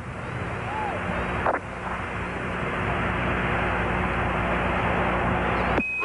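Steady hiss with a low hum from an open air-to-ground radio loop between transmissions. It cuts off abruptly near the end as the next voice comes on.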